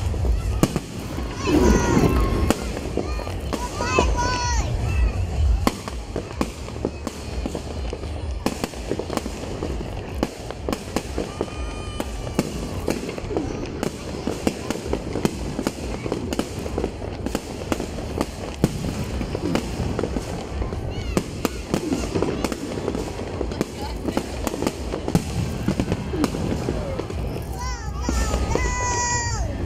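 Aerial fireworks display: a dense run of bangs and crackling bursts overhead, loudest in the first few seconds and then continuing steadily.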